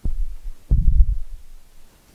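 Two dull, low thumps about three quarters of a second apart; the second is longer and rumbles briefly.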